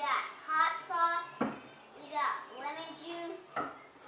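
A young child speaking in short, high-pitched phrases, with two brief knocks, one about a second and a half in and one near the end.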